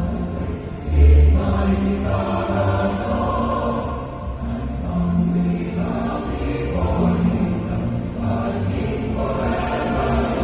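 A large choir singing sustained notes with a symphony orchestra, heard live from the audience. A deep low swell about a second in is the loudest moment.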